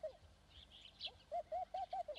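A bird calling softly in the background: a quick phrase of four short, arched cooing notes about a second in, with faint higher chirps from other birds.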